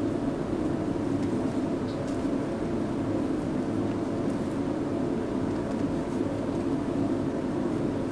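A steady low mechanical drone with a faint hum, unchanging in level.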